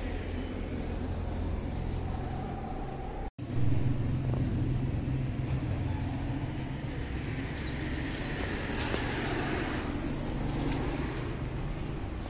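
Steady low outdoor rumble, like distant traffic, with a brief total dropout about three seconds in. A broader hiss swells and fades near the end.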